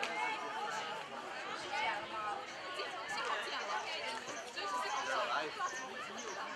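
Indistinct chatter: several voices talking and calling at once, with none standing out clearly.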